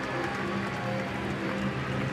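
Steady ballpark crowd noise with sustained steady tones of music underneath.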